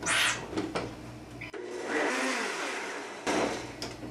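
Countertop blender running, blending milk, ice cream and whey protein powder into a shake: a short burst right at the start, then a longer run of about two seconds through the middle.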